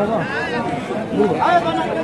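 Speech only: people talking and chattering over one another.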